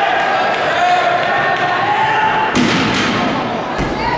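A gymnast's vault in a gymnasium over echoing crowd chatter: a sharp thud about two and a half seconds in from the takeoff on the springboard and vault table, then a deeper thud near the end as he lands on the landing mat.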